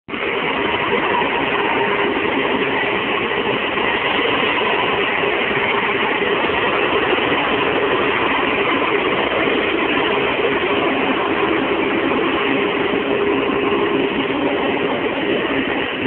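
Heavy diesel engine running steadily, with no break or change in level.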